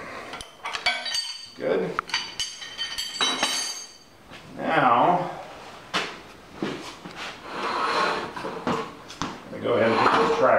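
Steel wrench and ratchet clinking on the steel brace bar and hitch as a large nut is tightened, with several ringing metallic clinks about one to four seconds in.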